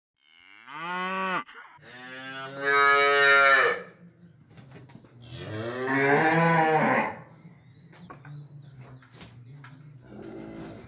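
A cow mooing three times: a short call, then a longer, louder one, then a third that rises and falls in pitch.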